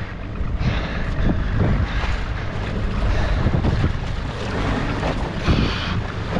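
Wind buffeting the microphone over choppy sea water washing against a small boat's hull, a steady rumbling noise throughout.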